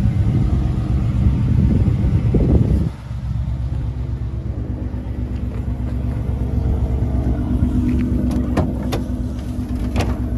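A Ford 5.0 L V8 idling, a steady low exhaust rumble that is loudest for the first three seconds and then drops suddenly. Two sharp clicks come near the end as the tailgate is opened.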